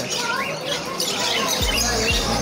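Caged lovebirds chattering, with short shrill squawks. About one and a half seconds in, background music with a steady beat comes in underneath.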